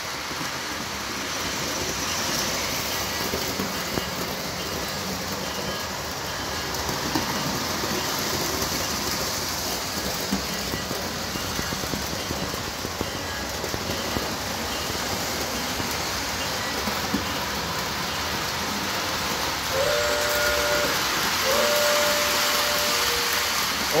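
O scale model trains rolling on three-rail track, a steady rumble and hiss of wheels and motors. Near the end a locomotive's onboard sound system gives two blasts of its horn.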